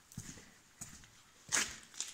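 Faint footsteps and scuffs on a dirt shed floor, with a few soft knocks and one short, louder rushing sound about one and a half seconds in.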